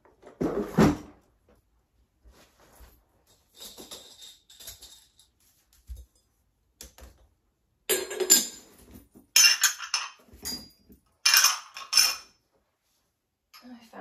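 Pieces of a small real ceramic toy tea set clinking against one another as they are gathered up, in several quick clusters during the second half. A duller thump near the start.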